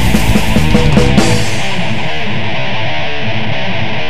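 Crossover thrash band playing, with distorted electric guitars and drums. About a second in, the drums and bass drop out and a guitar riff carries on alone.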